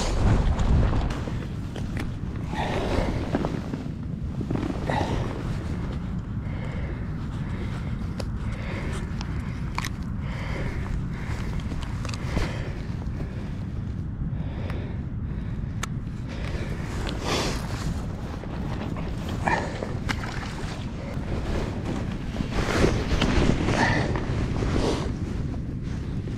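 Steady wind rumble on the microphone, with scattered small clicks and rustles as a metal fish stringer is handled and clipped.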